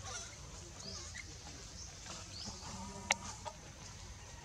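Faint short animal calls, a few quick high rising chirps, with one sharp click about three seconds in.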